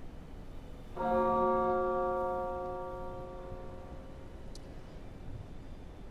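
A bell-like chime struck once about a second in, several tones sounding together, then ringing and fading away over about three seconds in a large reverberant hall.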